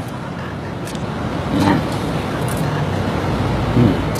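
Steady, even rushing background noise with no clear source, with a faint voice briefly about halfway through and again near the end.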